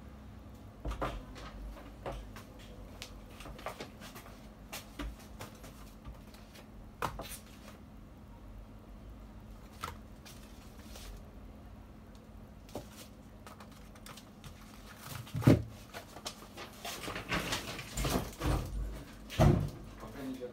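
Scattered clicks and knocks of objects being handled on a workbench, over a faint steady hum. There is a loud thump about fifteen seconds in and a quick run of clattering knocks near the end.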